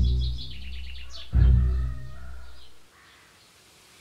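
Small birds chirping in quick high calls over two deep booming hits from the score, one at the start and one about a second and a half in. It all dies away near three seconds in, leaving near silence.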